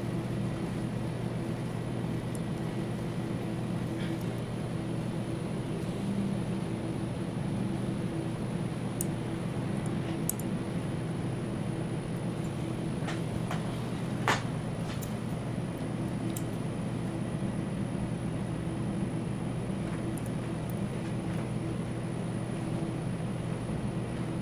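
Steady low mechanical hum of operating-room machinery or ventilation, with a few faint clicks and one sharper click about fourteen seconds in.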